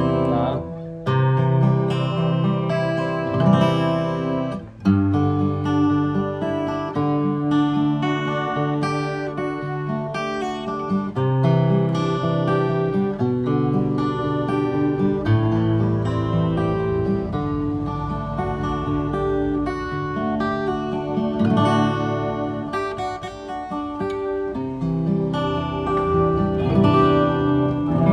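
Enya EGA-X1 Pro acoustic guitar played as a continuous run of strummed and picked chords, the notes ringing on. Its onboard effect is switched on and sounds through the speaker built into the guitar's body.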